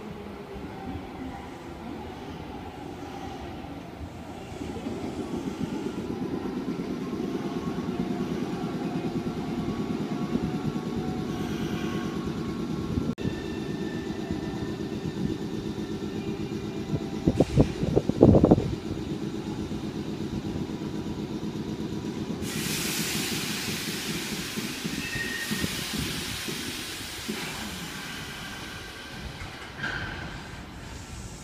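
Nankai 7100-series electric train pulling into the platform: a steady rhythmic wheel clatter that grows louder about four seconds in, and a short run of loud knocks a little past halfway. Near the end a steady hiss of air sets in as the train comes to a stop.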